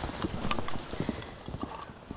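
Irregular light knocking footfalls, several a second, growing fainter toward the end.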